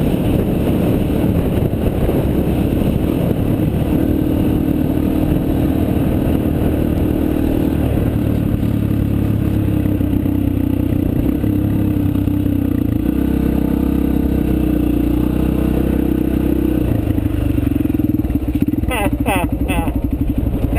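Dirt bike engine running as the bike is ridden, its pitch stepping up and down several times with changes in speed, then easing near the end.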